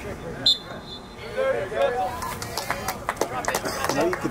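People talking close by, with one short high-pitched tone about half a second in.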